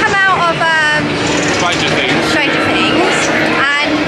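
Loud, high-pitched excited voices close to the microphone, over a dense, continuous din of a crowded outdoor event.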